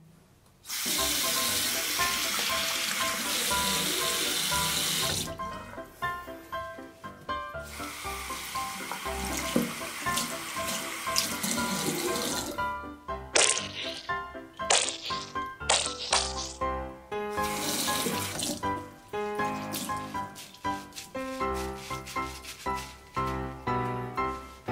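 Bathroom tap running into a ceramic washbasin in spells as a sponge is rinsed under the stream, with background music throughout.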